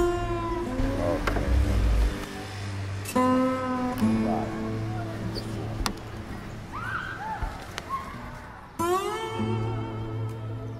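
Slow blues guitar: a few single notes and chords plucked and left to ring, with sliding, bending pitches between them.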